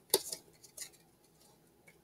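Brief crisp crackles from a foil trading-card booster pack and its cards being handled as the cards are pulled out. A sharp crackle comes just after the start, a few softer ones follow, and a smaller one comes a little under a second in.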